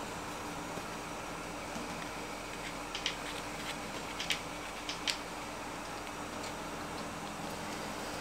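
Small scissors snipping open a leathery ball python egg: a handful of faint short clicks between about three and five seconds in, over a steady low room hum.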